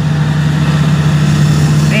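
Komatsu PC400-8 excavator's diesel engine and hydraulic pump running at high throttle, about 1,660 rpm, heard from inside the cab as a steady low hum with a hiss over it. The travel lever is being worked with the track raised off the ground, and the pump pressure is starting to rise.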